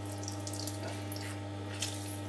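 Lemon juice trickling and dripping into a ceramic bowl as a halved lemon is squeezed by hand, heard as a few faint drips. A steady low hum runs underneath.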